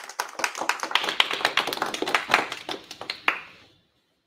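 A small audience applauding, the separate hand claps easy to pick out, dying away shortly before four seconds in.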